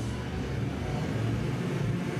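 Live electronic music: a low, steady synthesizer tone held with no singing over it.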